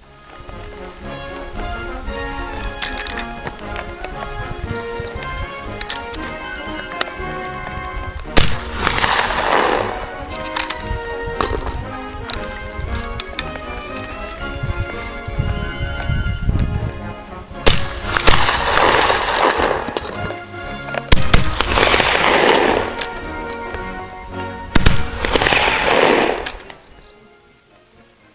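Background music, with four breaths blown one after another through a blow tube into the black-powder Martini-Henry rifle's bore, each a rushing hiss of about a second and a half that starts sharply. The first comes about eight seconds in and the other three come later, close together. Blow tubing is a fouling-management step: moist breath keeps the black-powder fouling in the barrel soft between shots.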